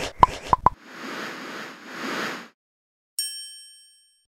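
Sound effects of an animated TV logo sting: a quick run of sharp pops, then a soft whoosh lasting about a second and a half, then, after a short gap, a bright chime that rings and fades away.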